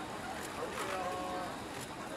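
People's voices over steady outdoor background noise, with one voice held on a pitch about halfway through.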